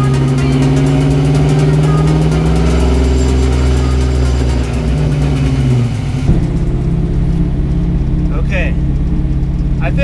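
A 1967 Mustang running in gear on a lift, its engine and spinning driveshaft giving a steady drone that drops in pitch about five seconds in as it slows. About six seconds in, the sound gives way to steady engine and road noise inside the car's cabin while driving.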